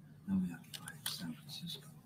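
Faint, muffled speech played back from an audio tape recording, too unclear to make out words, over a steady low hum.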